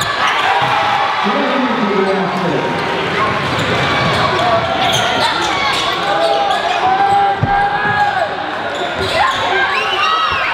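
Live basketball game sound in a large gym: many overlapping voices from players and spectators shouting and chattering, with a basketball bouncing on the hardwood and a heavier thud about seven and a half seconds in.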